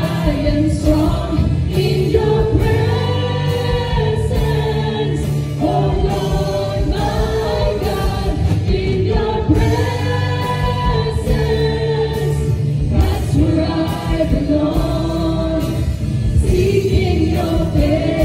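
A praise and worship team of several women's and men's voices singing a gospel song together on microphones, held notes over steady band accompaniment.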